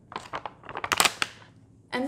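Frozen raspberries tipped out of a plastic bag into a glass bowl: a few short clatters of the hard frozen berries landing, with the bag crinkling. The loudest clatters come about a second in.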